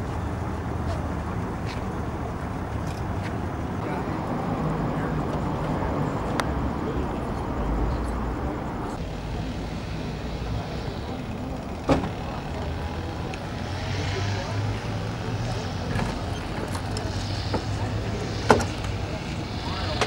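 Hot rod roadster's engine running at idle, a steady low rumble, with a few sharp clicks over it.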